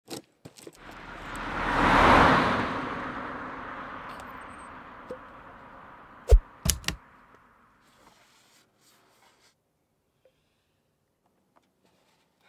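Title-animation sound effects: a whoosh that swells to a peak about two seconds in and slowly fades, followed by three sharp hits a little past the middle.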